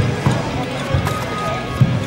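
Bare feet thudding on a wooden sports-hall floor as a karateka steps and stamps through a kata. There are four thumps, the last the loudest, over a steady background of voices in the hall.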